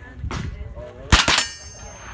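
Rifle shot a little past halfway through, with a second sharp crack close behind it and a brief high metallic ring dying away after; a fainter crack comes earlier.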